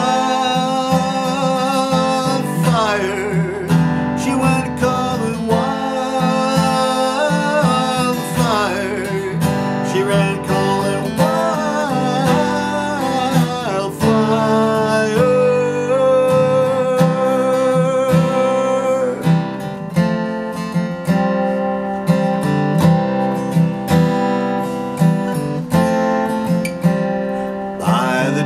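Steel-string acoustic guitar strummed in a steady accompaniment, with a man's singing voice over it for roughly the first half; after that the guitar carries on alone until the voice comes back right at the end.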